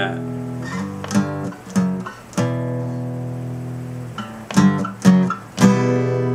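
Acoustic guitar in drop D tuning strumming the barred G, F-sharp, E walk-down. The chords are struck about half a second apart, one is left ringing for about two seconds in the middle, and the last rings on.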